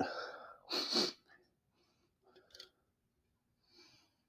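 A person sniffing hard through the nose about a second in, smelling a beer's aroma, followed by a few faint breaths.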